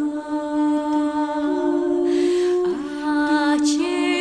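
Female vocal ensemble singing a cappella in close harmony, several voices holding long steady notes. Just after the middle comes a brief breathy hiss, then the voices move together to new notes.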